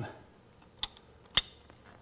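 Two sharp metallic clinks about half a second apart, the second louder, from a steel hand tool knocking against metal while a carbon reamer is worked in a diesel engine's prechamber.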